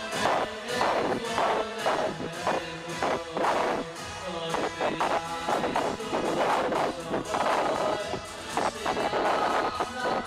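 A group of men singing a wordless Hasidic niggun together, with sharp claps keeping a steady beat about twice a second.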